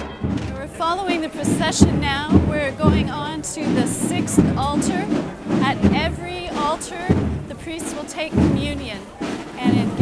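A marching band playing, with a wavering melody over repeated drum strokes, and crowd voices mixed in.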